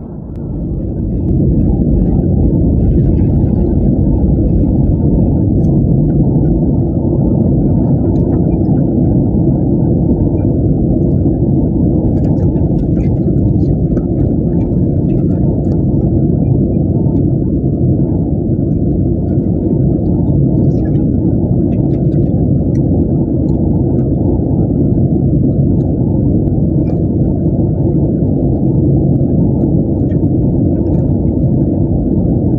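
Steady low roar of engine and airflow noise inside the cabin of a Boeing 737-900ER airliner in flight, swelling in about a second in and then holding level. Faint scattered ticks and rattles of the cabin ride over it as the plane shakes in turbulence.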